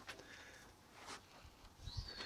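Near silence: faint background with a few brief, soft noises.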